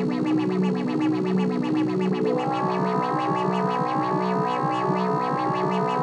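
Electronic synthesizer music from a Korg Kaossilator and a Teenage Engineering OP-1: a repeating low synth figure over a steady ticking beat. A little over two seconds in, a layer of repeated rising sweeps joins it and runs on to the end.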